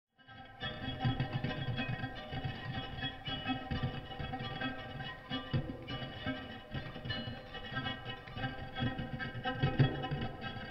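Electric guitar played through effects in a free improvisation: many held, ringing tones layered over a rough, shifting low rumble, fading in at the start.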